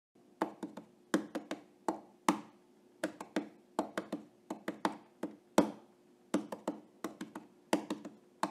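Sparse percussion music: sharp taps and knocks, about two to three a second in an uneven rhythm, some in quick pairs, over a faint steady low tone.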